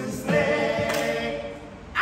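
A small group of men and a woman singing a song together; the final held note tapers off near the end.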